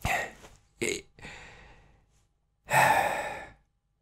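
A man's breathy exhalations: three short puffs in the first two seconds, then a longer sigh near the end.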